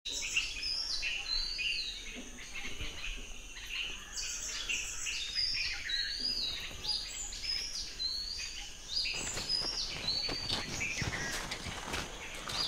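Several birds calling, short whistled chirps repeating about twice a second and overlapping. From about nine seconds in, scuffing steps and taps join them.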